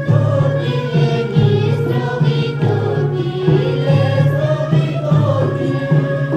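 Balti folk song sung by a group of voices together, with hand clapping and a low pulse keeping a steady beat.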